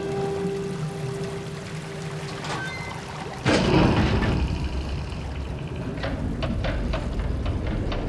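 Tense film score with a held note, then about three and a half seconds in a sudden loud rush of pouring water that keeps going, with a few sharp knocks near the end.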